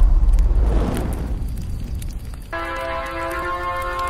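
Intro music: a deep, booming hit dies away over the first couple of seconds, then a sustained synthesizer chord comes in about two and a half seconds in.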